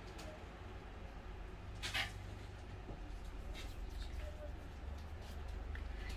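Quiet room with a low steady hum, faint soft handling noises from fingers working a small lump of modelling clay, and one short breathy hiss about two seconds in.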